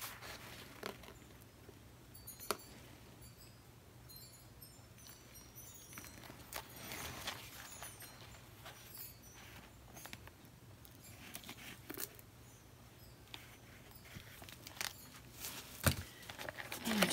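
Quiet handling noise: a few soft rustles and scattered light clicks over a low steady hum, with one sharp click at the very end.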